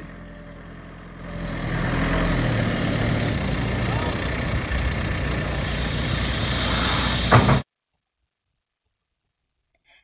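John Deere 310SL backhoe loader's diesel engine running under load, getting louder about a second in as the loader works, with gravel pouring from the raised front bucket in the last few seconds. The sound cuts off suddenly after about seven and a half seconds.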